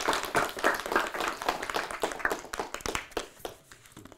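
Audience applauding with many hands clapping, dying away about three and a half seconds in.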